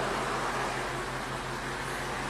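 Steady low hum and hiss of vehicles at the roadside, with no sudden events.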